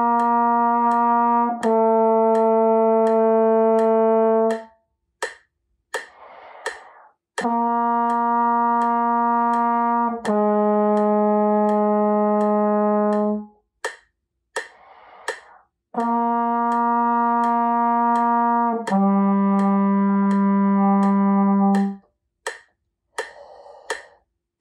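Trombone playing long tones tongued with a "tah" attack: three pairs of held notes about three seconds each. In each pair the same starting note is followed by a lower one, and that second note falls further with each pair. A breath is drawn between pairs, over a steady ticking click.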